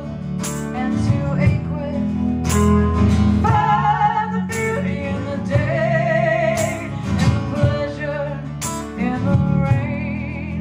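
Live blues band playing: acoustic guitar and keyboard under a woman singing long, wavering notes, with sharp strokes keeping a steady beat about every two seconds.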